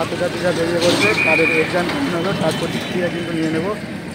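A man talking close to the microphone, with a short high steady tone sounding briefly about a second in.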